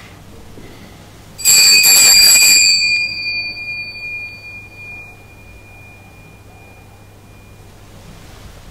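Small altar (Sanctus) bells rung once at the consecration, in a shaken burst of about a second and a half. The high, clear ringing then dies away over several seconds, the lowest note lingering longest.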